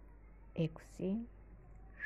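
A woman's voice speaking one short counted word over quiet room tone; no other sound stands out.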